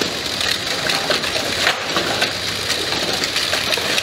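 Automated sorting and packing machinery running: a dense, continuous clatter of many small rapid clicks and rattles over a steady high hiss.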